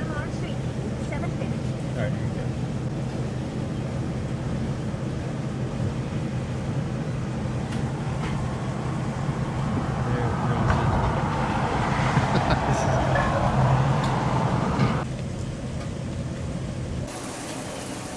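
Road traffic on a busy wet street: a steady low rumble, with a vehicle's tyre noise swelling as it passes about ten seconds in and dropping off a few seconds later.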